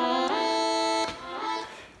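Virtual-analog Minimoog synthesizer model running on a SHARC Audio Module, playing a held chord through its reverb effect. The chord is released about a second in, leaving a reverb tail that fades away.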